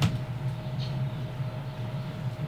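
A brief click at the start, then a steady low hum of quiet room tone.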